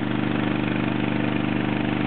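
Gold dredge's small gasoline engine running steadily at a constant speed.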